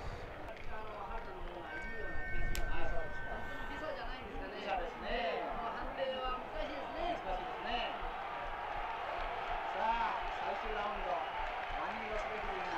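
Faint voices from the old fight broadcast's soundtrack, heard over a low background murmur during the break between rounds. A steady high tone sounds for about two seconds near the start.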